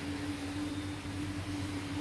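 A steady low mechanical hum with a constant tone over it, from a running machine.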